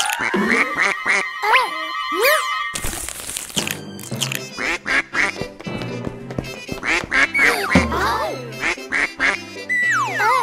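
Cartoon duckling sound effect: strings of short, high quacks in quick clusters over light background music.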